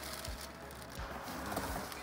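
Background music with a steady low beat, about three beats every two seconds.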